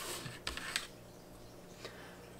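Faint handling sounds of a ruler and marker being lifted off paper and set aside: a light scuffing in the first second with two small clicks, then a quiet stretch with one more light tap near the end.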